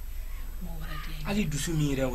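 A woman speaking in Malinké, starting about half a second in, over a steady low hum.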